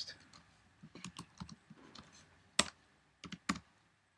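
Typing on a computer keyboard: a run of irregular key clicks, with the sharpest keystroke about two and a half seconds in and another near three and a half seconds.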